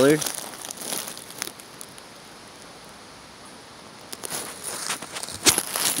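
Dry leaf litter and twigs rustling and crackling in a few scattered spells as someone moves through it, with one sharp snap near the end.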